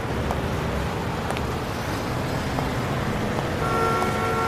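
Street-traffic ambience, a steady wash of car and road noise, used as a sound-effect intro at the start of a recorded Latin song; a held tone joins near the end.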